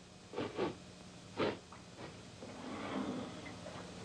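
A few short knocks, then faint rustling, over a steady low hum in the soundtrack.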